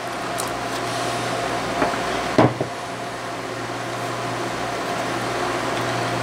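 Steady hum of a portable induction cooktop running under a pan of roux and stock being heated to a boil, with one sharp knock about two and a half seconds in.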